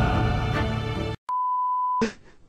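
Music that cuts off abruptly just past halfway, then after a brief silence a single steady high beep held to the end, the pure tone used as a TV censor bleep.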